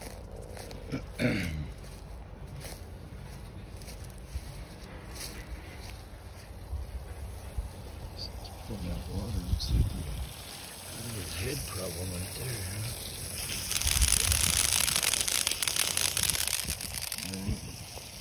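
A man clears his throat near the start. About fourteen seconds in, a steady hiss starts and runs for about four seconds; it is the loudest sound here.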